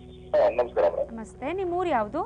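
A woman speaking in two short phrases with rising and falling pitch, over a faint steady background tone.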